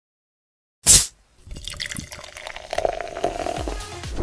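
Coca-Cola sound logo: a sharp hiss of a fizzy drink being opened about a second in, then the drink poured, fizzing and crackling with bubbles, a held filling tone toward the end.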